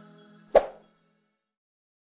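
The last of the outro music fading out. About half a second in comes a single sharp pop-like click, the sound effect of the end-screen cursor pressing the Subscribe button.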